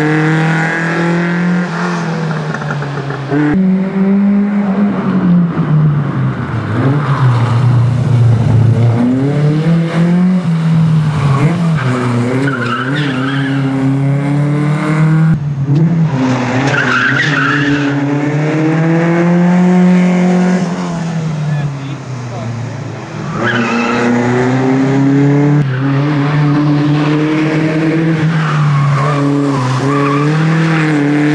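Rally car engines revving hard and dropping back again and again as the cars accelerate, shift and brake through tight corners, with tyres squealing at times.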